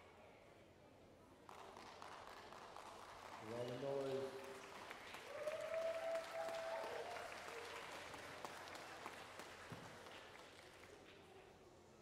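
Audience applauding. The applause starts about a second and a half in and slowly dies away near the end, and a voice calls out twice over it.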